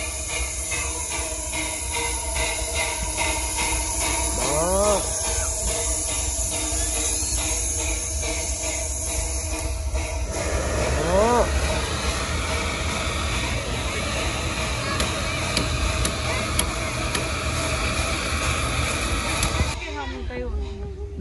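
Miniature steam locomotive standing in steam, with a steady hiss of escaping steam from around its cylinders and boiler fittings.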